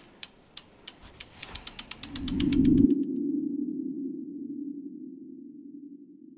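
Logo-reveal sound effect: a run of sharp ticks that speeds up under a rising swell, peaking about three seconds in, then a low hum that slowly fades.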